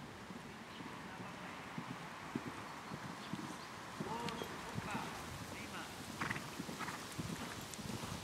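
Hoofbeats of an Austrian warmblood horse cantering on sand arena footing: repeated dull thuds in a steady rolling rhythm.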